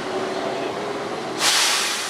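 Heavy truck traffic with a steady whine under it, and about one and a half seconds in a sudden loud hiss of air, a truck's air brakes letting off.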